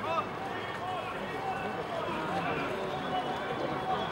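Several men's voices shouting and calling out over one another as rugby players set up a lineout; the lineout calls come just before the throw.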